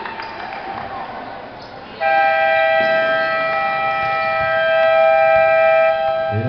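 Basketball scoreboard buzzer sounding one loud, steady tone for about four seconds, starting about two seconds in, the signal for the end of the quarter. Gym crowd noise and voices come before it.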